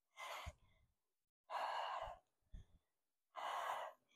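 A woman's quiet, forceful breaths, three of them about every second and a half, with the effort of a core exercise.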